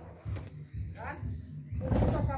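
People's voices talking, with a short rising vocal sound about a second in and a loud noisy burst near the end.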